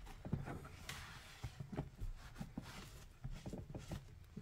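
Microfiber cloth wiping and rubbing the soaped leather web of a catcher's mitt: faint, irregular scuffing with scattered small knocks as the hands work the leather.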